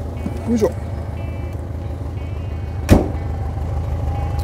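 The air-cooled flat-four engine of a Mexican-built Volkswagen Beetle idling steadily, with a car door shut once, sharply, about three seconds in. A faint high beeping repeats during the first couple of seconds.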